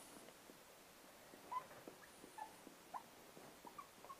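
Faint, short squeaks of a marker pen writing on a glass lightboard, several scattered chirps from about a second and a half in, against near silence.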